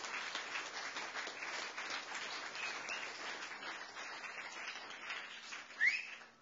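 An audience applauding, a dense patter of many hands clapping that thins out toward the end. A short rising whistle from the crowd is the loudest sound, near the end.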